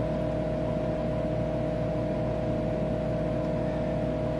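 Steady machine drone of a Tektronix 4054A computer running: a low hum and fan noise with a constant mid-pitched tone over it, unchanging throughout.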